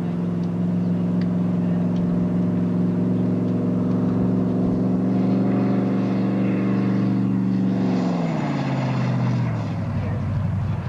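Eight-cylinder Buick V8 of a McLean monowheel running at steady revs, its pitch holding level and then dropping steadily over the last two seconds as the revs fall away.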